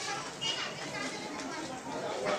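Many people's voices chattering and calling over one another, with children's voices among them.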